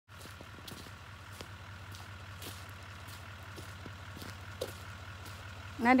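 A vehicle engine running steadily at low speed on a dirt track, a low even hum with scattered light clicks and knocks. A voice starts right at the end.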